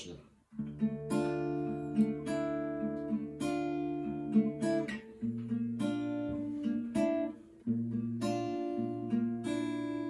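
Steel-string acoustic guitar played fingerstyle: chords plucked with several strings sounding together, each left ringing, about a dozen attacks in all. The bass drops and the chord changes about halfway through, with a brief pause before the next chords.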